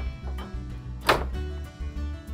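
Background music, with a single sharp clank about a second in as a steel weight-distribution spring bar drops into its socket on the hitch head.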